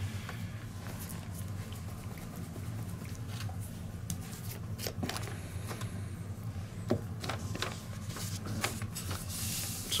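Scattered faint clicks and taps of small objects being handled on a tabletop, over a steady low room hum.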